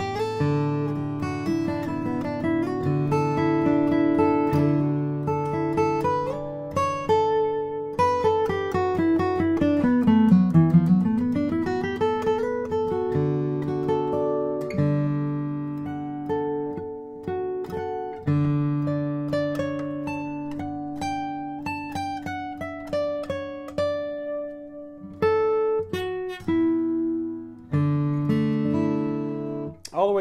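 2009 Bourgeois DB Signature dreadnought acoustic guitar, with an Adirondack spruce top and Madagascar rosewood back and sides, being played: strummed chords mixed with single-note runs. About a third of the way in, one run falls down into the bass and climbs back up.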